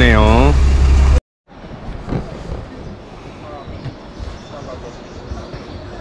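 A bus engine idling with a loud, steady low hum that cuts off abruptly about a second in. A much quieter outdoor background follows, with only faint scattered sounds.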